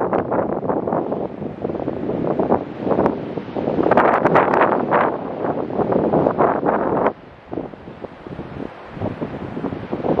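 Gusting wind buffeting the microphone over heavy surf breaking on a beach and against pier pilings. The buffeting is loudest about four seconds in and drops away suddenly after seven seconds, leaving a quieter wash of surf.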